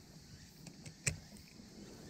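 Light handling clicks from a spinning rod and reel: two faint ticks, then a sharper click about a second in.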